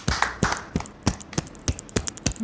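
A few people clapping hands, a quick irregular run of claps that thins out in the second half.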